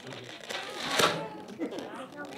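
Murmuring voices of a seated audience of children, with one sharp knock about a second in as a glued block is worked at in a model brick wall without coming loose.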